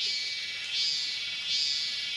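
High-pitched insect chorus from the forest, a continuous shrill buzz that swells in pulses about every three-quarters of a second.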